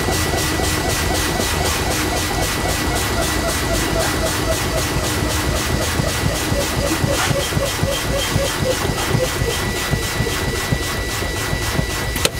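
Semi truck's air brake system being bled down by repeated brake pedal applications with the diesel engine idling, while the low-air warning buzzer sounds as a steady high tone. The pressure is falling toward the point where the spring brakes take over and the protection valves pop out.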